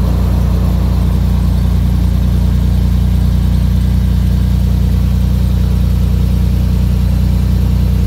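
2001 Toyota Tacoma engine idling steadily, heard up close from beneath the truck, running on a freshly replaced fuel filter while the fuel line connections are checked for leaks.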